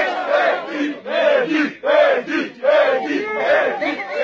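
A group of men chanting in unison, loud shouted syllables, a few a second, with short breaks between phrases: a football team celebrating a win.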